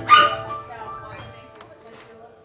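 A short, loud, high-pitched yelp in the first half second, over piano notes that then ring on and fade.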